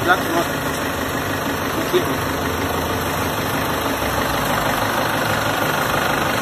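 An engine idling steadily, with a small click about two seconds in.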